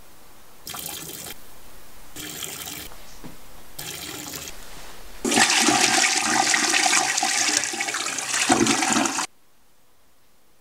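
Three brief bursts of rushing sound, then a toilet flushing loudly for about four seconds, cutting off suddenly.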